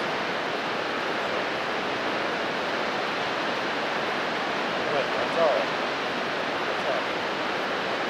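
Steady rush of the Umpqua River flowing close by, with faint, distant voices talking briefly about five and seven seconds in.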